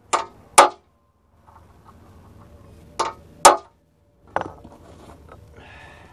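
Sharp metal clinks and knocks from metal parts or hardware being handled: two quick strikes near the start, two more about three seconds in, and a single one a second later, with faint clattering between.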